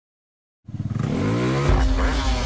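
A small motorbike engine comes in suddenly about half a second in and revs up, its pitch rising, then runs on at high revs with a deep low rumble added in the second half.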